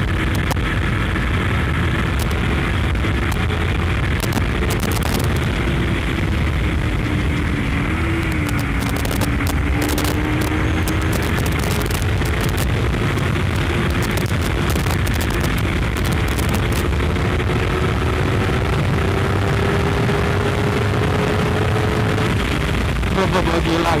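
Honda CBR250RR's parallel-twin engine pulling hard at speed in fourth gear, its note climbing slowly over many seconds with a brief dip about eight seconds in. The note falls away sharply near the end. Heavy wind rush on the rider's microphone.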